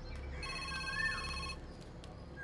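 Mobile phone ringtone: a steady electronic chord of several held tones sounds for about a second, starting about half a second in. A short bird chirp recurs in the background.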